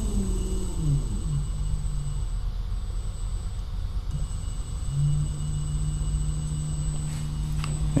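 Electric trolling motor spinning its propeller in air under an ESC throttle. Its whine falls in pitch over the first second or so as the throttle is backed off, and the motor stops. A steady low hum starts again about five seconds in.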